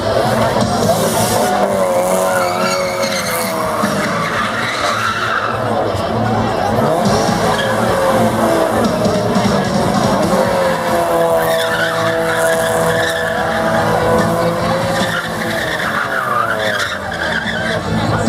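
Mazda MX-5 Miata's four-cylinder engine held at high revs while its rear tyres spin and squeal in a burnout, the engine note rising and falling as the car circles.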